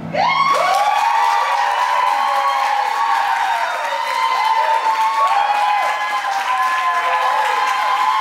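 Music stops right at the start, and a small audience breaks into clapping mixed with many high, wavering whoops and cheers that carry on steadily.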